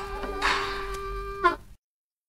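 The last held note of a 1950 Chicago blues trio recording (electric guitar, harmonica, drums): a buzzing sustained tone with a wavering vibrato, a rough noisy swell about half a second in, then a quick falling slide and an abrupt cutoff into dead silence, the end of Part 1 of the take.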